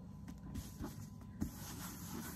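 A cloth wipe rubbing over a handbag's coated canvas: a soft, scratchy hiss that begins about half a second in, with one small knock near the middle, over a low steady hum.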